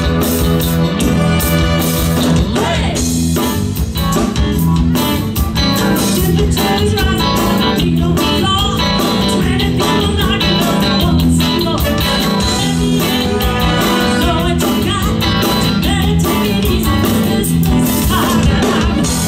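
A live horn band playing a cover song, with electric guitar, keyboards, drum kit and a horn section, and a singer over the band.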